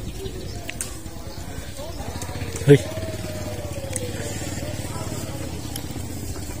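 An engine running steadily at idle, a low even hum with a fast regular pulse.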